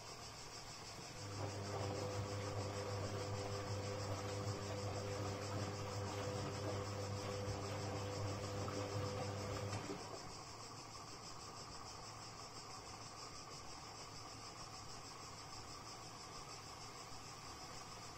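Castor C314 front-loading washing machine in the wash phase of an intensive cotton programme: its motor hums low as it tumbles the drum of wet laundry for about eight and a half seconds, starting about a second in, then stops and the drum rests. A steady high-pitched hiss runs underneath throughout.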